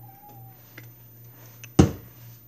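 A house cat gives a faint, short meow early on. Then a sudden loud thump comes near the end.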